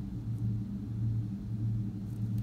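A steady low hum of room machinery that keeps going through the pause, with no other event standing out.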